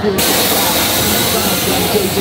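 A loud, steady hiss that starts suddenly just after the start and holds evenly, with faint voices underneath.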